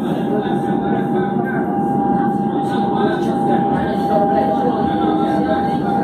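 Electric commuter train running on the rails, heard from inside a carriage, with a steady high whine through most of the stretch. Another train passes close alongside near the start.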